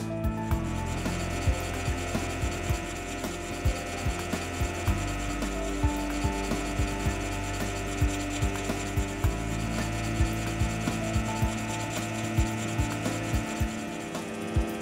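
A filing machine's reciprocating file rasping against a tool-steel clock click, shaping its curved profile in repeated scraping strokes, a few a second, over a steady low hum.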